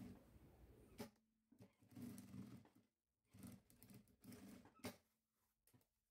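Near silence, with faint rustling of synthetic-leather fabric and bias binding being handled and a couple of soft clicks, about a second in and near the five-second mark.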